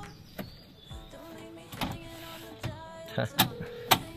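Clicks and knocks of a Mitsubishi Pajero's folding third-row seat being unfolded up out of the cargo floor, over background music. Several sharp clacks come near the end as the seat is raised.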